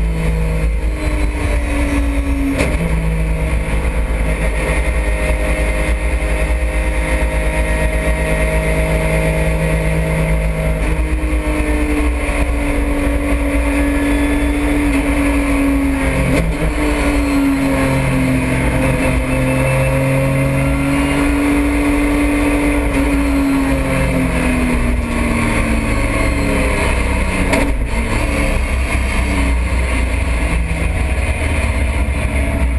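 Porsche GT3 Cup race car's flat-six engine heard from inside the cockpit. It runs at fairly steady revs, with slow rises and falls in pitch and a few abrupt steps up and down.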